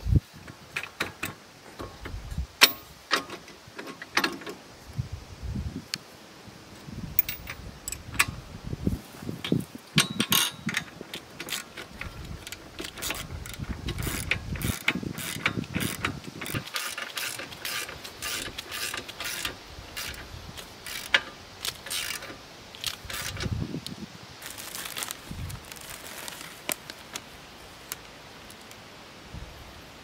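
Socket ratchet wrench clicking in quick runs as bolts on a steel trailer-tongue bracket are worked, mixed with sharp metallic clinks of tools and hardware.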